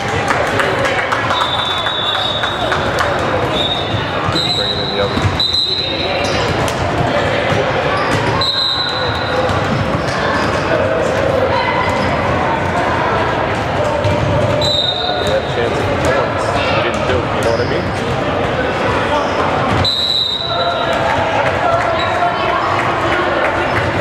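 Indoor gym during a basketball game: a ball bouncing on the court, short high sneaker squeaks several times, and a steady murmur of spectators' voices.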